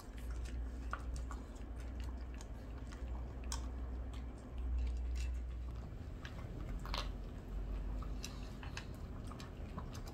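Small dogs (Shih Tzus) chewing dry food from their bowls: scattered, irregular crunches and clicks, over a low steady hum.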